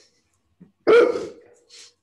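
A pet dog barking once, a single short bark about a second in.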